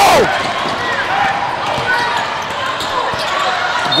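A basketball being dribbled on a hardwood gym floor, bouncing repeatedly, under the chatter of players and spectators in a large hall. A shout ends just as it begins.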